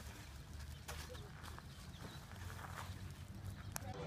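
Faint low wind rumble on the microphone, with a few scattered soft clicks and scuffs.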